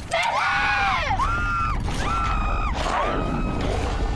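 A voice giving four long, high, drawn-out cries, one after another, each rising, holding and falling away.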